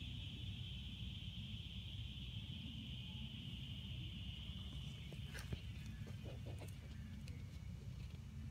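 A steady, high-pitched insect drone from the surrounding woods, easing slightly in the second half. A few soft clicks come about five seconds in.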